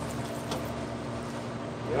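Steady background hum and hiss of running machinery, with a faint click about half a second in.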